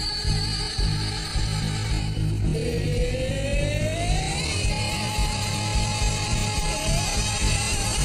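A stage musical's pit band playing a loud up-tempo number with a heavy, pulsing low beat. About two and a half seconds in, a single high note slides upward and is then held for a couple of seconds.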